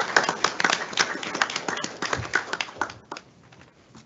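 A small audience clapping, fading away about three seconds in.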